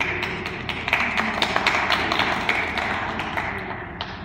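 Audience applauding, starting suddenly and dying away toward the end.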